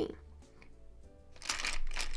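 A short scratchy rustle of nail polish supplies being handled, lasting about a second and starting about a second and a half in.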